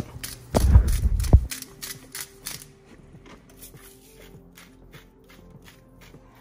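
Seasoning being shaken and ground over a pot of soup: a few dull thumps about half a second in, then a run of quick dry clicks from a spice shaker and a pepper mill being turned, growing fainter.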